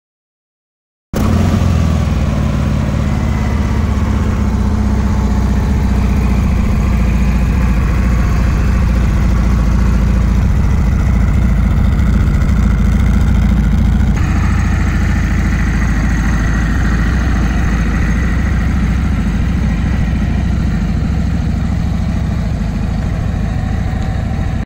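Harley-Davidson Road Glide's 114-cubic-inch V-twin idling steadily through a two-into-two exhaust, starting suddenly about a second in. The tone shifts slightly about fourteen seconds in.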